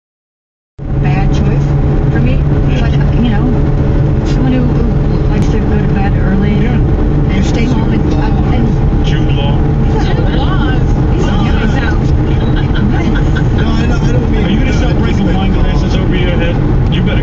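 Steady road and engine noise inside a car's cabin at highway speed, starting abruptly under a second in and holding level, with tyres running over cracked concrete pavement.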